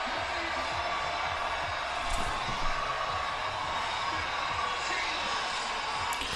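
Football stadium crowd noise from a TV broadcast, steady throughout, with a commentator's voice faint underneath.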